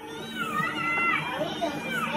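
Dialogue from a TV soap opera heard through the TV's speaker: several voices calling out over one another, with a steady low hum underneath.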